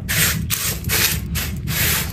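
Small gravel stones being rubbed and pushed around by hand in a wide pan: a gritty, rasping scrape in quick repeated strokes, about two to three a second.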